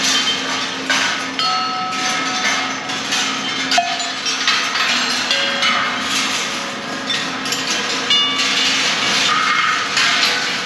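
George Rhoads's 1974 Electric Ball Circus, a rolling-ball kinetic sculpture, running: balls clatter and click along its wire tracks and through its mechanisms, with frequent short ringing tones from struck metal pieces at several pitches, over a steady low hum.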